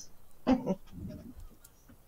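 A person's brief voiced sound about half a second in, followed by a fainter low murmur.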